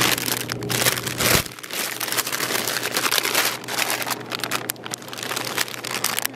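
Plastic produce bags of grapes crinkling and rustling close to the microphone as they are handled, a dense, irregular run of crackles.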